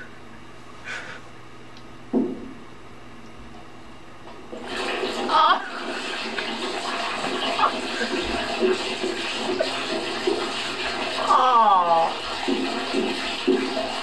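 Sound of a YouTube video playing through computer speakers: a low steady hum for the first few seconds, then, about five seconds in, a loud rushing, water-like noise starts and runs on with a voice over it.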